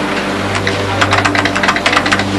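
A computer keyboard being typed on: quick, uneven clicking that starts about half a second in, over a low, steady drone of background music.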